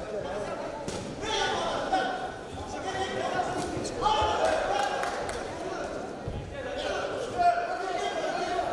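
Men's voices shouting in a large hall, coaches and spectators calling out during a boxing exchange, with a few sharp thuds of gloves landing and feet on the ring canvas.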